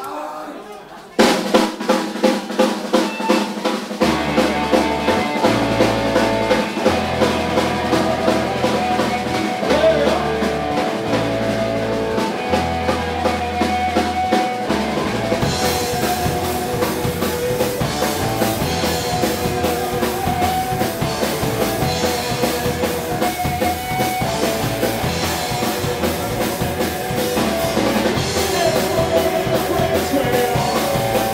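Live punk rock band starting a song. The drum kit opens alone about a second in, bass guitar notes join at about four seconds, and the full band with guitars comes in about halfway through.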